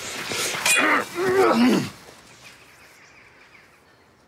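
A man's two loud shouts of effort as he swings a sword in a duel, the second one longer and falling in pitch, with a rushing swish just before them.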